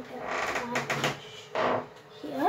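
Rustling and light clicks of a towel and a hairbrush being handled, with a short louder rustle near the end.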